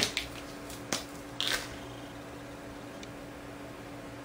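A few light, sharp clicks and a short rustle as fine-liner pens are handled over paper, the loudest click right at the start, then only a faint steady hum.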